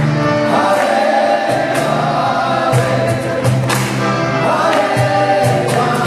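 A group of voices singing a devotional kirtan chant over a steady low drone. Sharp percussion strikes punctuate the singing at irregular intervals.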